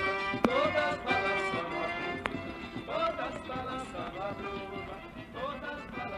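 Forró music, a northeastern Brazilian trio song, fading out gradually at the end of the track.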